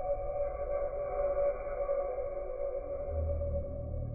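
A steady, music-like drone of held tones over a low rumble, and the rumble grows stronger about three seconds in.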